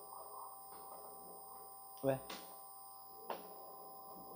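Quiet lecture-room tone with a few faint steady high tones, broken by one short spoken word about two seconds in and a brief click just after three seconds.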